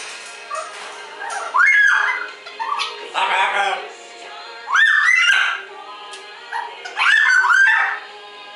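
A green-winged macaw and smaller parrots calling back and forth: short arching calls that rise and fall, in clusters about two, five and seven seconds in, with a harsher, noisier call around three seconds in.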